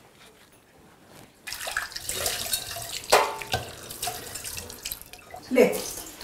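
Kitchen tap running into a sink while dishes are washed by hand, starting about a second and a half in, with a couple of sharp clinks of dishes.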